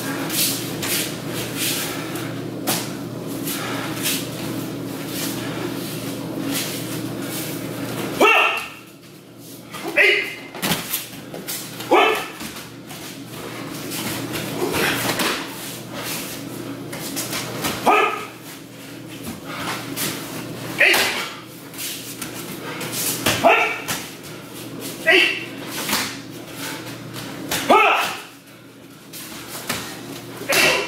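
Short, sharp shouts come every two to three seconds amid the slaps and thuds of bodies breakfalling on tatami mats during aikido free-technique throws. A steady hum runs under the first eight seconds and stops abruptly.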